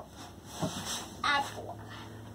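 Quiet room with two short, faint bits of voice, one just after half a second in and one about a second and a quarter in, then a low steady hum in the second half.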